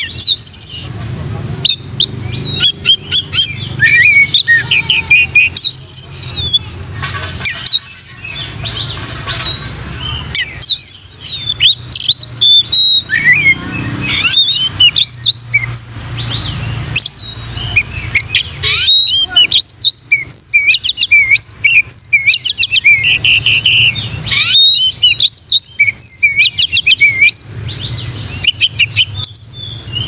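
Oriental magpie-robin (kacer) singing continuously, non-stop 'gacor plonk' song: a fast, varied run of whistles, chirps and trills with only brief pauses.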